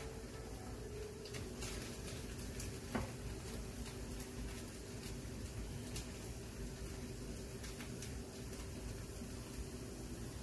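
Potato and vegetable pancakes frying in oil in a pan: a quiet, steady sizzle with a few faint crackles.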